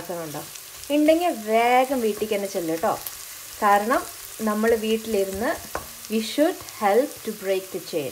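Sliced red onion and garlic sizzling in oil in a pot, stirred with a wooden spoon, under a person talking.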